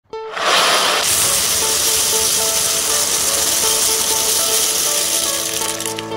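Thousands of loose plastic LEGO bricks pouring down onto a flat surface, a dense, continuous clatter that starts abruptly and lasts about five seconds. Background music with a simple melody plays underneath.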